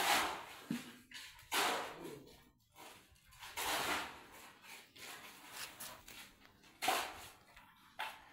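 A steel shovel scraping and scooping through wet mud on a concrete floor, four strokes at uneven intervals.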